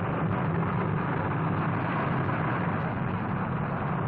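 Rocket engine noise from a launch: a steady, dense rumble as the rocket climbs away.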